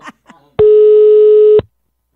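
A telephone line tone: one loud, steady, low-pitched beep about a second long that starts and cuts off abruptly.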